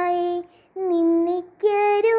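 A young girl singing solo. She holds a long steady note, breaks briefly, holds a second note, and starts a higher one near the end.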